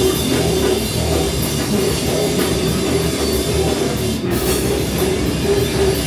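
Live heavy metal band playing loud, with electric guitar and drum kit.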